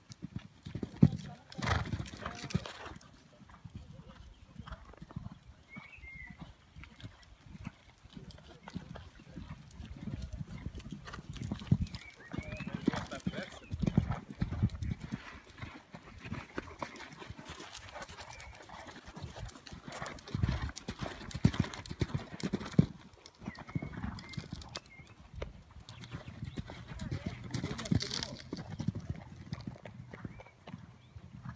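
Horse's hooves cantering on a sand arena, a steady run of dull thuds that grows louder and fades as the horse passes.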